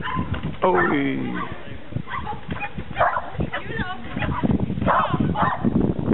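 A dog yipping and barking several times in short, high calls.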